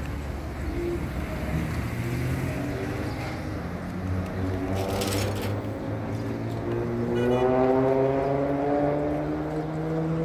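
City street traffic: vehicle engines running, and one accelerating with a slowly rising pitch through the second half, loudest a little past the middle. A short hiss comes about halfway through.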